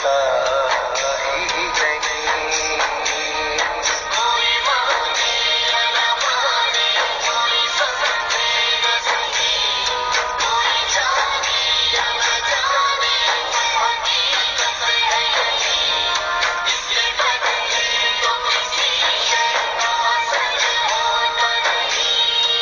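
Music from a Hindi-Urdu film-style song, a passage with no words made out between sung lines. The sound is thin, with little bass.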